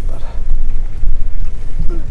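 Inside a moving car: a steady low rumble of the engine and tyres.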